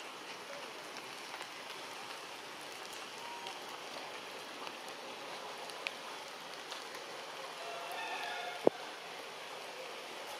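Steady rain falling on forest foliage, with scattered small drop clicks. A faint brief call sounds about eight seconds in, followed by a single sharp click, the loudest sound.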